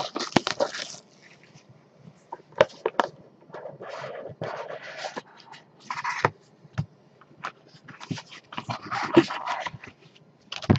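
Plastic shrink wrap crinkling and tearing as it is stripped off a trading-card box, loudest in the first second. After a short lull come intermittent rustles, scrapes and taps as the cardboard box is opened and cards in plastic sleeves are slid out.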